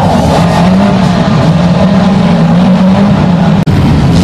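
Engines of several banger racing cars running together, a loud steady drone, with a brief break in the sound a little before the end.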